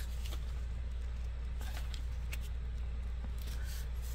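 Faint clicks and rustles of a telescoping metal squeegee handle being handled, over a steady low hum.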